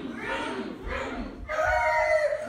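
Performers' voices making drawn-out wordless calls, ending in one long held call near the end.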